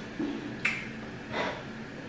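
Fufu being worked by hand in slimy okra soup: a soft squelch, then a sharp wet click, then a longer sticky smack past halfway.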